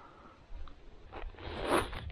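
Rustling and scraping noise over a low rumble, building in the second half into a short zip-like rasp.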